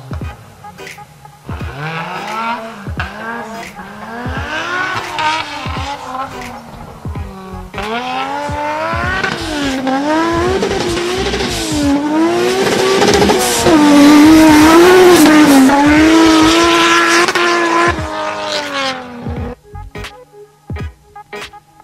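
Nissan Patrol with a swapped engine, revving hard and repeatedly, its pitch climbing and dropping again and again as it slides on dirt. It is loudest in the second half and cuts off just before the end.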